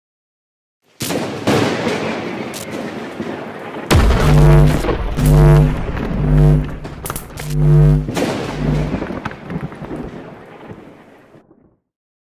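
Cinematic logo-intro sound effect: a sudden crash about a second in that slowly dies away, then a deep boom near four seconds followed by five low held notes over a heavy bass rumble, the whole thing fading out just before the end.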